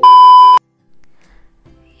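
A loud, steady high-pitched beep: the TV colour-bar test-pattern tone, used as a transition sound effect. It lasts just over half a second and cuts off suddenly.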